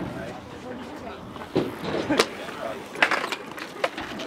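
Stunt scooter rolling on concrete, with a few sharp clacks as it knocks against the ground.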